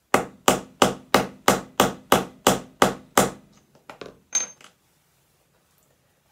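A small hammer striking a metal eyelet-setting tool ten times in quick succession, about three blows a second, to set a metal eyelet through layered fabric on a wooden tabletop. A few lighter knocks and clinks follow.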